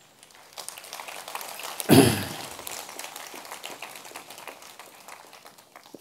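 Audience applauding: a dense patter of clapping that swells to a peak about two seconds in, then thins out and dies away.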